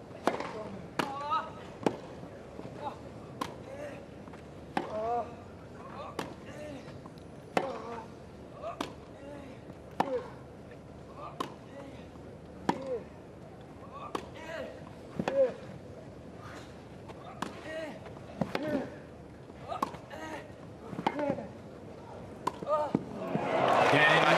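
Tennis rally on a grass court: a serve and then racket strikes on the ball about once every second or so, each with a short grunt from the hitting player. Crowd applause rises right at the end as the point is won.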